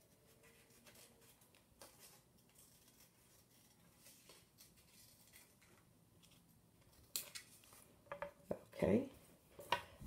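Scissors snipping through paper card, faint and intermittent, with a few sharper, louder snips about seven seconds in.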